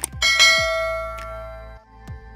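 A click sound effect followed by a bright notification-bell chime that rings and fades over about a second and a half, laid over background music with a regular beat.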